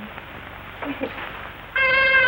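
A trumpet starts playing sustained notes near the end, the introduction of a swing number. Before it comes a quieter stretch of old film-soundtrack hiss with a faint short sound about a second in.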